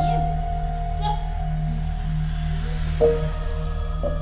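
Background film score: a steady low drone with soft, ringing notes struck near the start, about a second in and again about three seconds in.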